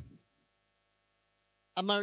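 Near silence: a pause of about a second and a half between phrases of a man's speech through a microphone. His voice trails off just after the start and begins again near the end.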